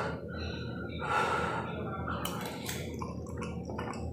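A person chewing a mouthful of pasta, with breaths through the nose and a few small clicks of the mouth.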